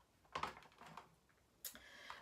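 Faint clicks from a Yamaha melodica being handled, its keys and plastic mouthpiece hose being readied for playing: a soft click about half a second in and a sharper one about a second and a half in.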